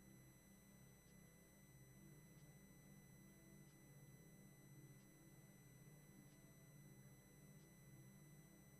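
Near silence: room tone with a faint steady high electronic whine over a low hum.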